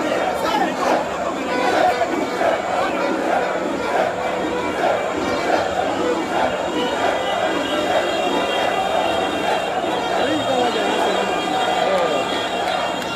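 Large crowd of football supporters celebrating: many voices shouting, chattering and singing at once in a continuous loud din.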